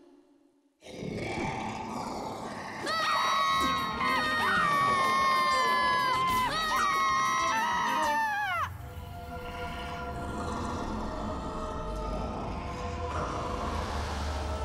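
Eerie cartoon wailing: several held, wavering tones sounding together, bending and breaking off about eight and a half seconds in, then a quieter low drone.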